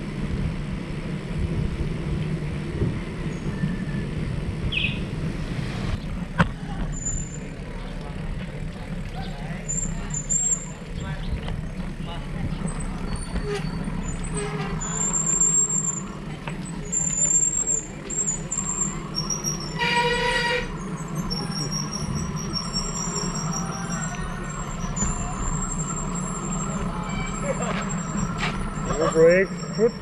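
Bicycle rolling along a concrete road, with a steady low rumble of tyres and wind on the bike-mounted microphone. A short toot sounds about twenty seconds in, and voices are heard near the end.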